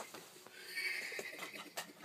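A stifled, hissing laugh held under the breath for about a second, with a few light clicks and knocks of a phone being handled.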